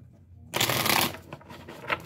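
A tarot deck being shuffled by hand: a dense rush of cards slipping past one another about half a second in, then a few lighter card ticks.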